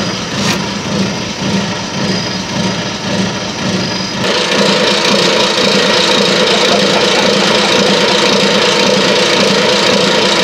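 Pickup truck engine idling steadily. About four seconds in the sound gets louder and fuller as it is heard from underneath, at the driveshaft and rear differential.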